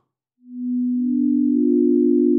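Three pure electronic sine tones on the just-intonation notes B, D and F (about 248, 293 and 352 Hz) enter one after another, about half a second apart, and are held together as a chord. The chord is out of tune with the earlier pattern: the third has a 32/27 ratio instead of 6/5, and the fifth is 64/45 instead of 3/2.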